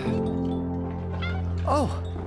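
A small kitten's short meow that rises and falls in pitch near the end, over soft background music with held notes.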